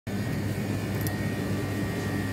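Steady low hum of store background noise, with a faint high steady whine above it and a faint click about a second in.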